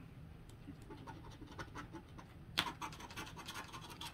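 Plastic scratcher tool scraping the latex coating off a scratch-off lottery ticket in quick, short, faint strokes, with one sharper scrape about two and a half seconds in.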